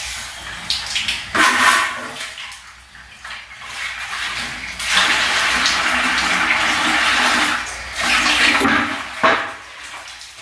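Toilet flushing: a rush of water that runs steadily for about three seconds from about five seconds in, with shorter splashes before and after it.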